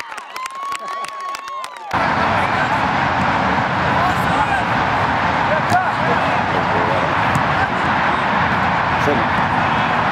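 Shouting and clapping cut off abruptly about two seconds in. They give way to the steady noisy open-air ambience of a soccer match on a field, with faint distant shouts of players.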